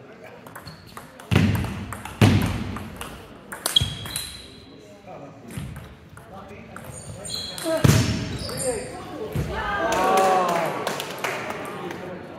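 Celluloid-type table tennis ball being struck by rubber-faced bats and bouncing on the table in a rally, a few sharp clicks about a second apart in the first four seconds and another loud one near the eight-second mark, echoing in a large hall.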